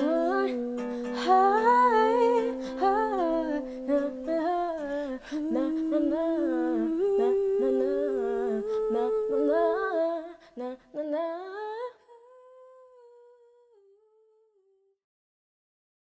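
Layered female vocals humming wordless runs in harmony over a light plucked-string accompaniment. The music stops about twelve seconds in, leaving one faint held note that fades to silence.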